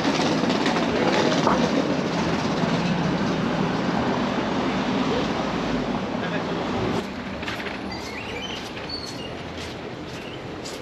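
Busy city street noise with a steady low rumble, dropping sharply about seven seconds in to quieter street sound with a few light clicks.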